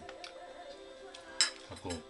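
Chopsticks and tableware clinking during a meal: a few light clicks, then one sharp clink about one and a half seconds in.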